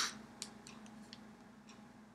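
A breathy hiss dies away at the very start. A few faint, sharp clicks follow, scattered over two seconds, as the hands and mouth move while signing. A low steady hum runs underneath.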